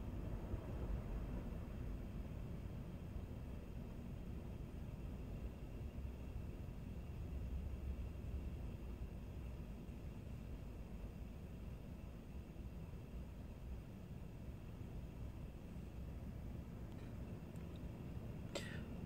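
Quiet, steady room tone: a low hum with no distinct sound events.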